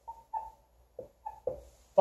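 Dry-erase marker squeaking and scratching on a whiteboard as a word is written, in a run of short strokes with brief gaps between them.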